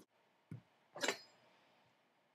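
Two soft knocks of tomatoes set down on a wooden cutting board, then a brief clink about a second in as a chef's knife is picked up off the counter.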